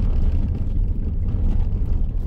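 Steady low rumble of a Mercedes-Benz Sprinter van's diesel engine and road noise, heard from inside the cab.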